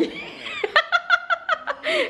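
A young girl giggling: a quick run of high-pitched laughs, about eight a second, lasting under a second from about three quarters of a second in.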